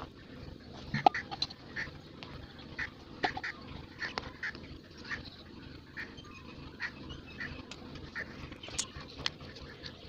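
Repeated short bird calls, about two a second and irregularly spaced, with a few sharp clicks; the loudest click comes about a second in.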